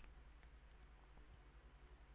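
Near silence: faint room tone with a low steady hum and a couple of faint clicks.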